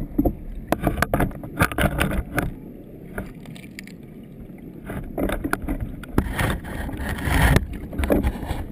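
Churning, bubbling river water heard from a submerged camera, in irregular loud bursts with a calmer stretch in the middle.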